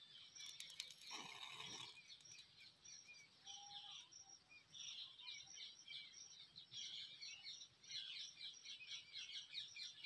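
Near silence, with faint bird chirps repeating throughout in the background.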